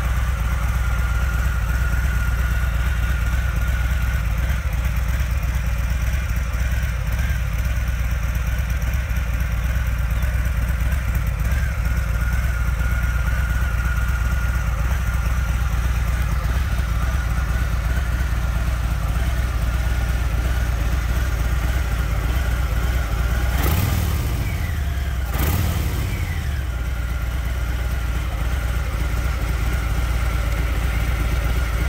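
A 2023 Harley-Davidson Fat Boy's Milwaukee-Eight 114 V-twin, on its stock exhaust, idling steadily. Near the end it gets two quick throttle blips about a second and a half apart.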